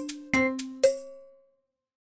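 End of a short intro jingle: three struck, ringing notes in quick succession, each fading, the last dying away about a second and a half in, followed by silence.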